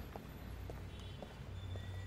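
Footsteps of shoes walking on pavement, a steady pace of about two steps a second, over a low steady hum.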